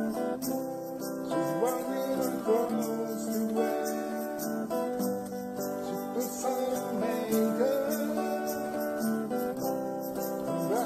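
Multi-tracked electric guitars playing a slow ballad: a sustained lead line with string bends over held chords.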